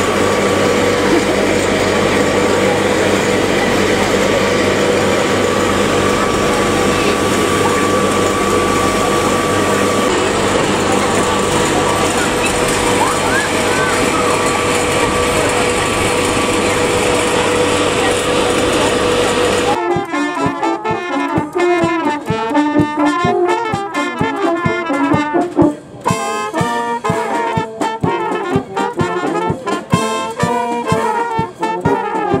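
A steady motor whirs with a constant hum for about twenty seconds, then cuts off suddenly. An outdoor brass band takes over, with trumpets, tenor horns and tubas playing.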